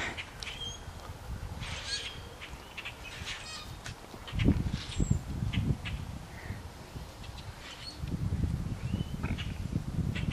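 A flock of blackbirds calling from a tree: many short chirps and squawks, overlapping and scattered throughout. A low rumble comes in briefly about four and a half seconds in and again from about eight seconds.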